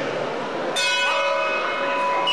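A metal bell is struck once, about three-quarters of a second in, and rings on with many bright overtones as it slowly fades. A second tone joins shortly after. At the bout it is the signal that stops the fighting.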